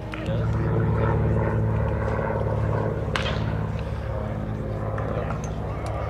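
A low, steady mechanical drone with a hum starts just after the beginning and fades near the end, over faint ballpark chatter. A single sharp knock comes about three seconds in.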